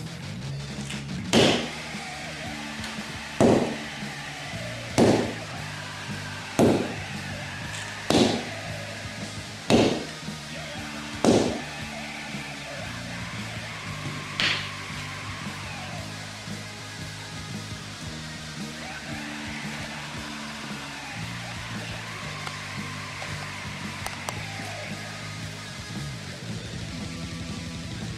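Background music with low held notes, over which come seven sharp whacks about a second and a half apart, then one softer whack a few seconds later.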